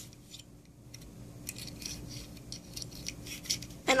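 Plastic MagiClip doll being worked into its hard plastic clip-on dress: faint, scattered scraping and clicking of plastic on plastic.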